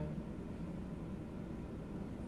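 Steady low background hum, the room tone of a large hall, with no distinct sounds.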